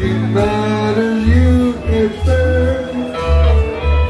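Live rock band playing: electric bass holding heavy low notes under electric guitars and a bowed violin.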